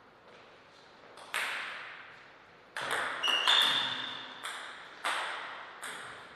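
A table tennis ball being struck and bouncing, a string of sharp, irregularly spaced pings that ring on in the hall. Several come in quick succession about three seconds in.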